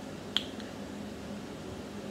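A single sharp finger snap about a third of a second in, with a fainter click just after, over a steady low room background.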